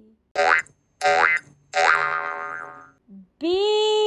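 Three short cartoon 'boing' sound effects, each a quick rise in pitch, about 0.7 s apart. Near the end a long held note begins that slowly falls in pitch.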